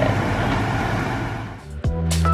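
Pasta water at a rolling boil in a saucepan, a steady bubbling noise that fades out about a second and a half in. Background music with a beat starts near the end.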